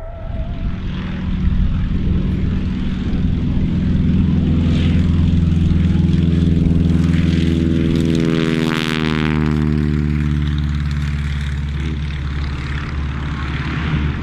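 Propeller-driven aircraft flying past: the engine drone builds up, is loudest about halfway through, then drops in pitch as the plane passes and moves away.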